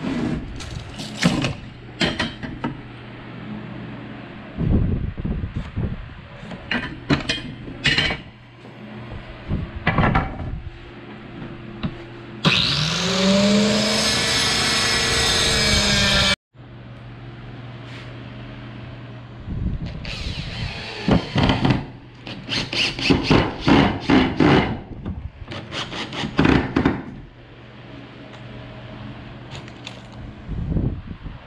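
Handheld circular saw spinning up and cutting a pine board for about four seconds, stopping abruptly. Before and after it, a run of sharp knocks and taps from handling the boards and tools, densest in the second half.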